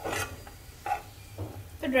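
Metal spatula scraping fried dry fruits across a ghee-coated non-stick frying pan and knocking them onto a steel plate, in short scrapes and clinks at the start and about a second in, over a light sizzle of hot ghee.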